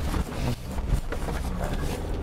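Ford Ranger Bi-Turbo pickup's 2.0-litre twin-turbo diesel engine running with a steady low rumble as the truck drives over a rough dirt track.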